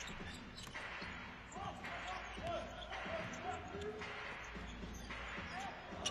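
Live arena sound of a basketball game in play, heard faintly: a basketball bouncing on the court with short knocks, amid distant voices and crowd noise that swells and fades about once a second.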